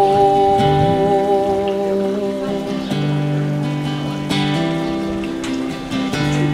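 Acoustic guitar strummed in a slow folk-blues chord pattern, with the singer's last note held over it and fading out about two and a half seconds in; a few sharper strums come near the end.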